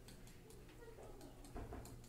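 Faint, irregular light taps and clicks of a stylus on a pen-input writing surface as an equation is written out by hand, over a low steady hum, with a slightly louder soft bump near the end.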